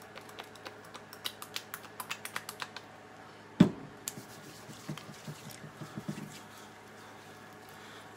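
A quick run of light clicks and taps, then one louder knock about three and a half seconds in and a few scattered softer clicks: a plastic tube of hand cream and its packaging being opened and handled.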